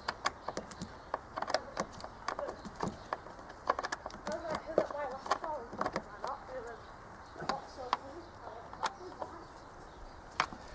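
Irregular light clicks and knocks of plastic and metal as gloved hands handle and refit the corrugated air-intake hose and its connectors in a van's engine bay.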